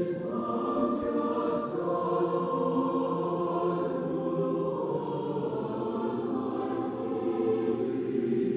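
A choir singing a hymn in held notes.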